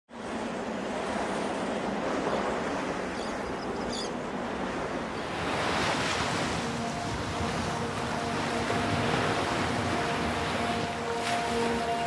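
Ocean surf and wind: waves washing onto a sandy beach as a steady rush, swelling about halfway through.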